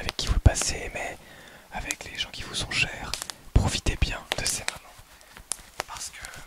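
Close-miked whispering, broken up by sharp clicks and two heavy low thumps, about half a second and three and a half seconds in, from leather-gloved hands moving at the microphone.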